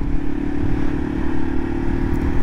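Yamaha TW200's air-cooled single-cylinder engine running steadily at cruising speed, with wind and road noise on the onboard microphone.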